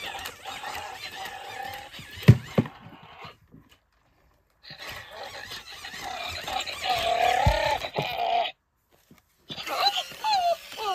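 WowWee Dog-E robot dog playing with its magnetic bone toy: electronic dog-like sound effects from its speaker, including a wavering pitched whine near the end, over the busy noise of its walking. A sharp knock a little over two seconds in, and the sound drops out for about a second in the middle.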